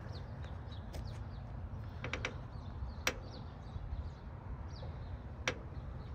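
Faint high chirps of birds over a low outdoor rumble, with a few sharp clicks.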